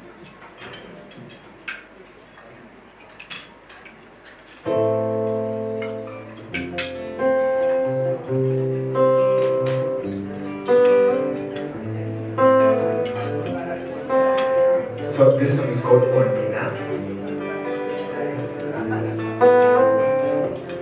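A few light clicks over quiet room sound, then an acoustic guitar strikes a ringing chord about five seconds in and goes on playing an intro of chords and single plucked notes.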